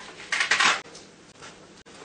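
A picture card or sentence strip ripped off the Velcro of a PECS communication book: one short, rough tearing sound lasting about half a second.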